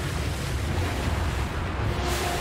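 Animated-show sound effect of a thick bank of mist billowing up over water: a steady rushing, wind-like noise over a deep rumble.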